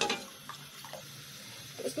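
Metal spoon stirring milk in an aluminium pan as it heats toward the boil: a sharp clink of the spoon against the pan at the start, then a couple of light taps over a faint steady hiss.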